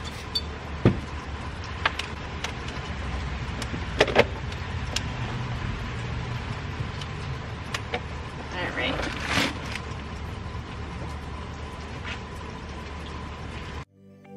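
Items being handled in an SUV's cargo area: a plastic potty being moved and surfaces wiped, heard as scattered light knocks and clicks, two sharper knocks around four seconds in, and a rustle a little past the middle, over a steady low hum and hiss.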